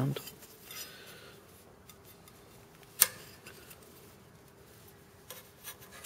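A sheet-metal drive bracket being turned around and handled against the steel side of a rackmount server chassis, rubbing and clinking quietly. There is one sharp metallic click about halfway through and a few lighter clicks near the end.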